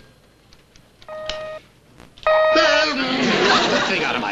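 Electronic pager beepers being tested: a short steady beep about a second in, then a second beep just past two seconds that runs into a loud, jumbled burst of noise.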